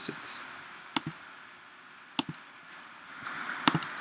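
A handful of single keystrokes on a computer keyboard, spaced out at about a second apart, over a faint room hiss.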